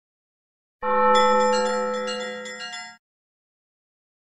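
A bell-like chime chord struck once about a second in, ringing out and fading for about two seconds before cutting off: a logo sting.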